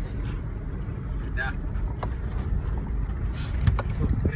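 Car cabin noise while driving slowly on a rough gravel and rock track: a steady low rumble of engine and tyres on loose stones, with a few sharp knocks and rattles in the second half.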